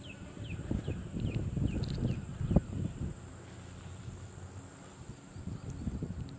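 Rustling and knocks from a small bluegill being handled and unhooked close to the microphone, loudest in one knock about halfway through. Behind it, a run of short, high, falling chirps, about three a second, fades out about halfway through.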